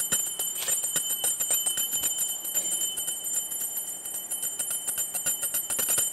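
Puja hand bell rung rapidly and continuously, its clapper striking many times a second so the high ringing tones hold steady, as is done during an offering in the ritual.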